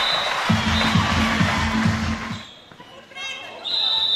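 Spectators in a sports hall cheering loudly while a drum beats a steady rhythm for about two seconds; the noise dies away near the three-second mark, and a steady high tone with voices starts near the end.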